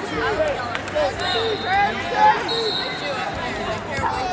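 Overlapping voices of spectators in a large hall, a steady background of chatter and calls, with two short high-pitched steady tones partway through.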